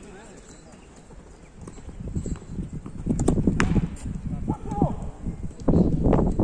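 Outdoor small-sided football match: thuds of the ball being kicked and players' running feet, with players shouting. Fairly quiet at first, growing busier and louder from about halfway, with the loudest shouting near the end.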